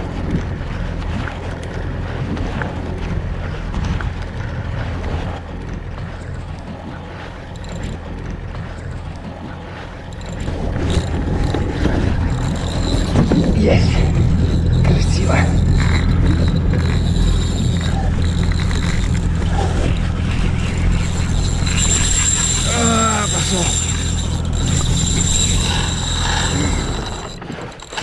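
Wind and water noise on the microphone over open sea with a steady low hum that grows louder partway through, and the whir of a spinning reel being wound in while a popper is retrieved, most audible in the last few seconds.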